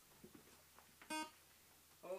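Near-quiet room tone, broken a little after a second in by one short pitched note that cuts off suddenly.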